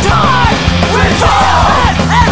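Loud hardcore punk song: distorted guitars, bass and fast drums under a shouted vocal.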